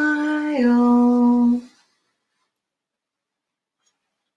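A woman humming two long held notes, the second a little lower than the first, which stops a little under two seconds in.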